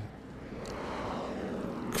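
Distant passing vehicle: an even rushing noise that grows slowly louder.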